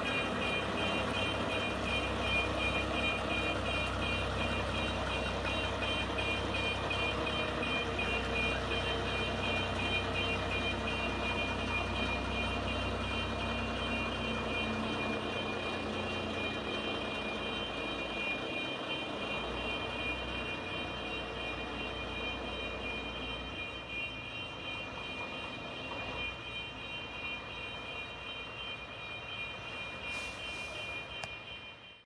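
Jelcz 315 fire engine's diesel running as it reverses, with a reversing alarm beeping rapidly and steadily. The engine rumble dies away about two-thirds of the way through.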